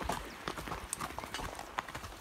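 Horse hooves clip-clopping on a stony dirt track, a quick run of uneven hoof strikes.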